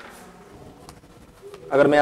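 A pause in a man's lecture: faint room noise with a low steady hum and a single faint click about halfway through, then he starts speaking again near the end.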